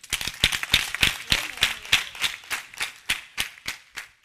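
Hands clapping, quick and steady at about six claps a second, thinning out near the end.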